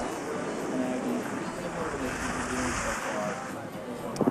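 Skis sliding over groomed snow, a steady hiss that swells a little past halfway, with faint background music underneath.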